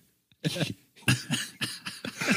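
A person coughing: a rough cough about half a second in, followed by a run of further coughs from about a second in.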